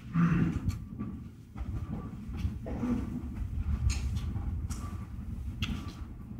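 Low rumble with scattered knocks and clicks: handling and movement noise picked up by a podium microphone.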